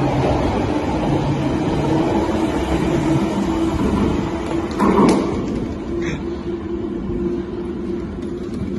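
A London Underground Piccadilly line 1973 Stock train pulling out of the platform and running into the tunnel, a steady rumble that drops a little over the last couple of seconds, with a brief thump about five seconds in.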